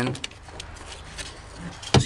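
A few faint handling clicks, then one sharp knock near the end, as a 6x9 car speaker is worked into place in the truck cab's rear plastic trim panel.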